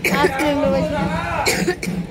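People talking, with a short cough about one and a half seconds in.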